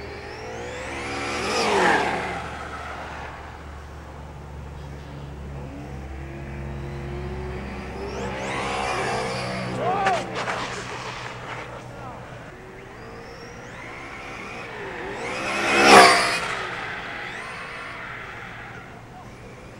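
Brushless-motored Traxxas Slash 4x4 RC truck on 3S LiPo making three high-speed passes close to the camera, each a whine that rises as it nears and drops as it goes by. The third pass, about sixteen seconds in, is the loudest, and the second comes with a few sharp clicks.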